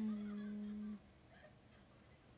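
A woman's short hummed note with closed lips, held on one pitch for about a second after a small mouth click, then cut off.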